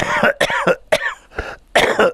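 A man coughing into his hand: several coughs in quick succession, about half a second apart.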